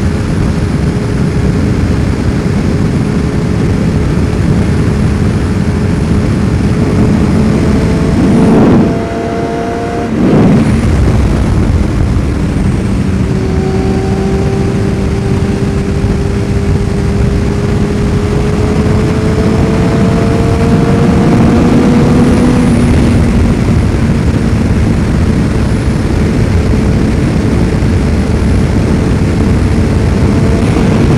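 Yamaha FZR600R's inline-four engine running under load while riding. About nine seconds in, the throttle closes briefly and the sound drops. Then the engine pulls again, its pitch slowly rising.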